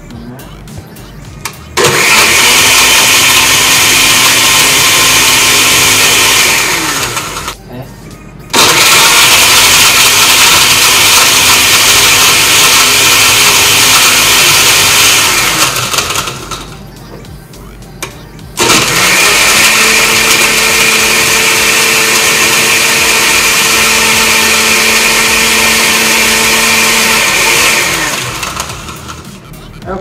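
Countertop blender with a glass jar running three times in long bursts, blending a smoothie with ice cubes in it; each run starts abruptly and winds down over about a second as the motor is switched off.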